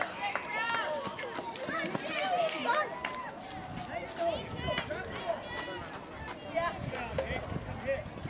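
Several people's voices calling out and chattering at once, with no clear words.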